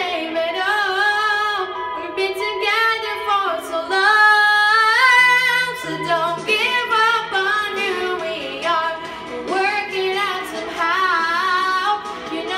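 A girl singing into a handheld karaoke microphone: a solo voice holding and bending notes with vibrato, loudest about four to five and a half seconds in.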